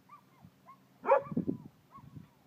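A dog whining in a few faint, short high whimpers, then giving one much louder bark about a second in.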